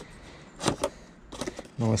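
Gloved hands prying at the taped lid of a cardboard box: two short sharp clicks of the cardboard flap close together, then a brief rustle of handling.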